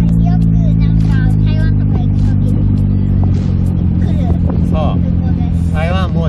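Daihatsu Copen Xplay's 660 cc three-cylinder turbo engine running steadily with the roof open. Its low hum eases off a little about halfway through, under people talking.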